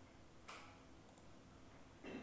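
Near silence with a single short click about half a second in and a fainter tick a little after a second, from keys being pressed on a laptop.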